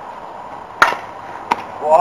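A baseball bat hitting a pitched ball with one sharp crack a little under a second in, followed by a lighter knock about half a second later. Players start shouting near the end.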